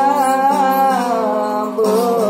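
A woman singing a Gujarati folk devotional bhajan, her voice holding long notes that bend and waver, over the steady drone of a plucked tambura.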